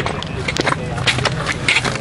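Indistinct shouting and chatter from players and spectators at a baseball game, over a steady background noise.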